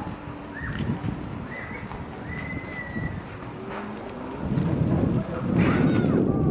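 Gotway electric unicycle tyres rolling over bumpy, wet grass: an uneven low rumbling patter that grows louder over the last second and a half or so.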